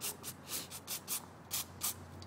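Aerosol can of carburetor cleaner sprayed through its straw in a rapid series of short hissing bursts onto small brass carburetor main jets, cleaning them.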